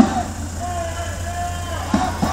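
Police van engine running as the van pulls slowly away, a steady low rumble. Crowd voices run through it, and there is a thump near the start and another near the end.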